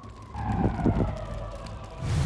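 Cinematic sound effect in a TV promo: a low rumble under a tone that glides slowly downward, with a few short low hits between about half a second and a second in.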